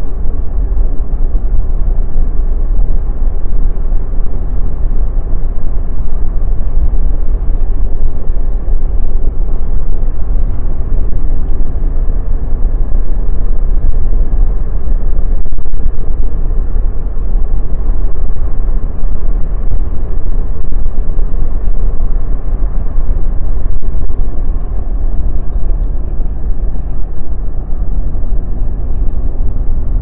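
Car driving at road speed: a loud, steady low rumble of tyre, engine and road noise inside the cabin.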